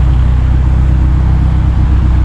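Steady, loud low rumble of road traffic along a city avenue, with no single vehicle standing out.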